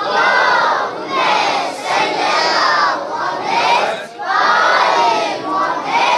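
A children's choir shouting a chant in unison, in loud bursts about a second apart.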